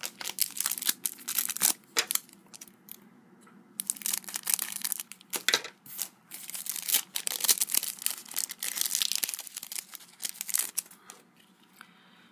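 Foil Panini Adrenalyn XL booster pack crinkling in the hands and being torn open, then its trading cards slid out and shuffled. Crackling in stretches, with a lull about two seconds in and dying down near the end.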